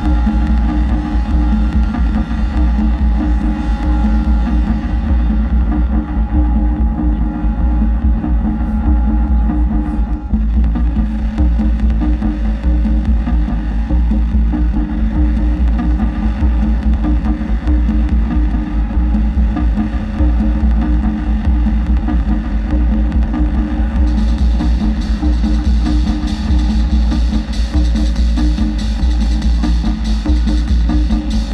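Loud live electronic noise music from a modular synthesizer and keyboard: a dense, steady drone with heavy sub-bass and layered held tones. About 24 s in, a bright hissing layer comes in on top.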